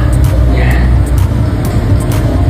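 A loud, steady low rumble, with a faint brief voice about two-thirds of a second in.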